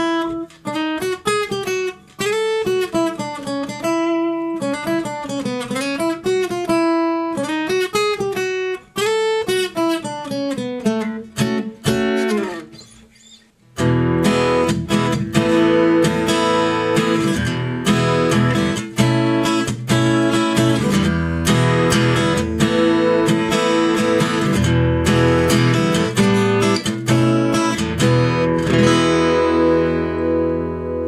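Flight F-230CEQ Grand Concert cutaway acoustic guitar, with a spruce top and agathis back and sides, played solo. For the first half it plays a melodic line picked note by note. After a brief break about 13 seconds in, it plays full strummed chords.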